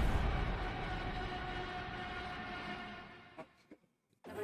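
Sustained synth drone from a video game's death screen, holding a steady chord and fading out over about three seconds, with a faint click or two just before it cuts to silence.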